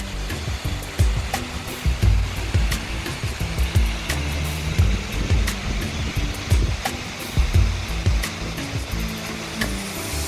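Background music with a steady beat and a shifting bass line, over a steady rushing noise.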